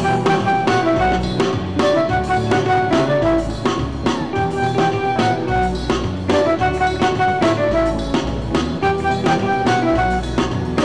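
Live band playing an instrumental stretch of a song: a drum-kit beat under a repeating melodic riff on keyboard and guitar.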